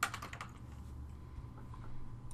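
Computer keyboard typing: a quick run of faint keystrokes, mostly in the first half second, over a low steady hum.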